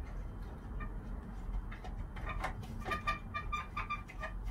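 Light clicks and scrapes of a plastic LED tube being worked into the pin holders of a fluorescent batten fitting. About halfway through, a run of short high chirps at a fixed pitch starts, about four a second, over a low steady hum.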